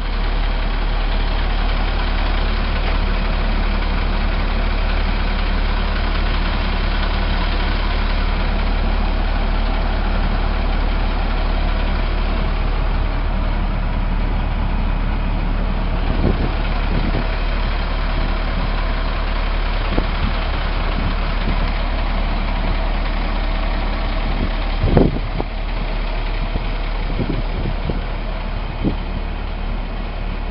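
Diesel engine of a 2003 International 7400 rear-loading packer truck idling steadily, with a few short knocks; the loudest is about 25 seconds in, after which the engine sounds slightly quieter.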